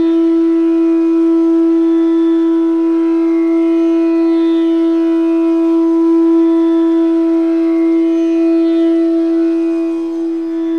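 Bamboo bansuri flute holding one long steady note, with its overtones, unbroken for the whole stretch.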